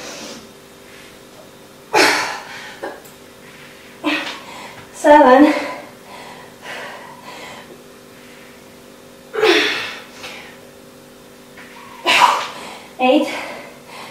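A woman's forceful exhales and effortful grunts, about six short sharp bursts of breath a few seconds apart, from the effort of dive bomber push-ups.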